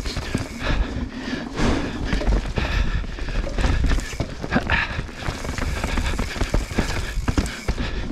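Mountain bike tyres clattering over the planks of a wooden boardwalk and knocking over roots and rocks on dirt singletrack: a dense, uneven run of clacks and thumps over a steady low rumble.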